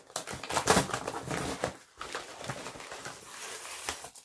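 Packaging being unwrapped by hand: an irregular run of short scratchy noises and clicks as the package is pulled open.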